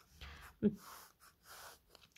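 Faint breathing and one short vocal sound from a person, with soft scratching of a pen writing on paper.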